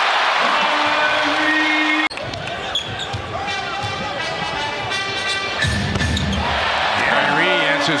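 Basketball-arena crowd cheering a made three-pointer. About two seconds in, an abrupt edit switches to live game sound: a basketball being dribbled on a hardwood court over steady crowd noise.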